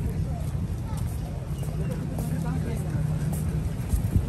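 Outdoor walking ambience: a steady low rumble with faint voices of passers-by in the background.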